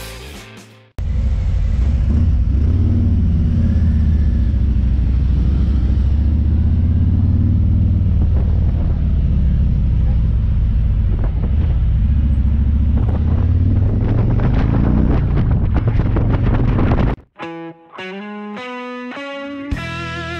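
Harley-Davidson motorcycle riding at speed, heard on an onboard camera: a heavy low rumble of engine and wind, the engine note drifting up and down with the throttle. Near the end, the ride sound cuts off and guitar music comes in.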